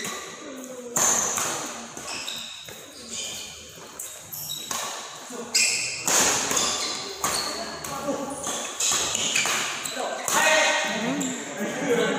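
Badminton doubles rally in a reverberant hall: sharp racket hits on the shuttlecock several times, short high squeaks of court shoes on the synthetic floor, and players' voices and calls.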